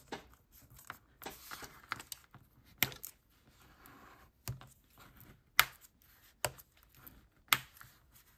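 Heavy cardstock being folded along a scored edge and creased with a bone folder on a cutting mat: soft paper rustling broken by about five sharp clicks and taps.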